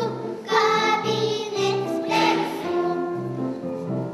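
A small ensemble of young children singing a song together, accompanied by piano whose low notes sound in a steady, regular pattern under the voices.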